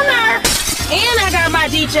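Hip-hop radio mix: a voice over a bass-heavy beat, with a crashing, glass-shattering sound effect about half a second in.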